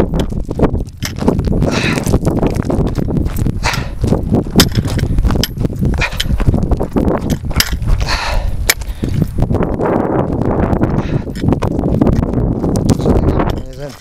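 Footsteps crunching on loose stones and gravel, descending a rocky mountain trail, with sharp steps about once a second over a steady low rumble.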